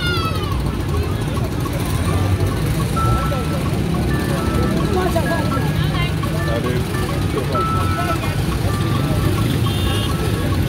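Busy night market crowd: overlapping chatter over a steady low engine rumble from road traffic, with music playing. A brief falling tone sounds right at the start.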